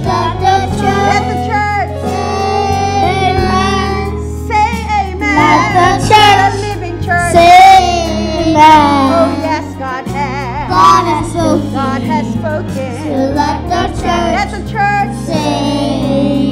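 Group of children singing a gospel song into microphones through the church sound system, over steady instrumental accompaniment.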